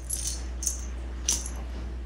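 Three light clicks with a faint jingle, about half a second apart, as a person steps away from a lectern, over a steady low hum from the room's sound system.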